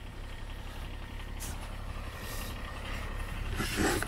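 Kubota BX compact tractor's diesel engine idling steadily at a distance, a low rumble, with a few footsteps crunching in deep snow that grow louder near the end.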